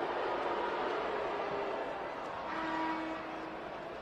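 Steady arena crowd noise during a free throw, with a faint held tone about two and a half seconds in.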